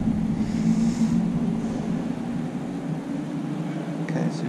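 A steady low drone with a constant pitch and no rise or fall, like machinery running in a large hall.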